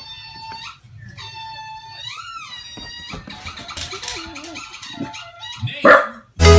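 Bulldog whining in two long, high, drawn-out cries, the second bending up and then down at its end, followed by softer, varied sounds.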